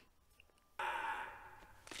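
A woman's breathy sigh that starts about a second in and fades away, after a moment of near silence.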